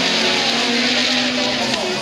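Engines of several autocross race cars running together on a dirt track, heard from beside the course. The engine notes overlap and slowly fall in pitch as the cars lift off.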